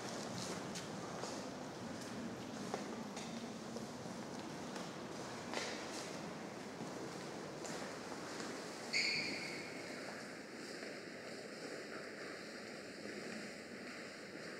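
Hushed ambience inside a large stone cathedral, a steady hiss with a few faint scattered knocks like footsteps on the stone floor. About nine seconds in comes one short, bright clink that dies away quickly.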